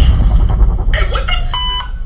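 A deep, loud bass rumble that fades slowly, with a short electronic beep about a second and a half in.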